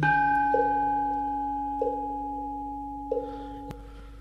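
Instrumental accompaniment between chanted verses: a bell-like note struck at the start rings on and slowly fades. Under it a soft note repeats about every 1.3 seconds, and there is a faint click near the end.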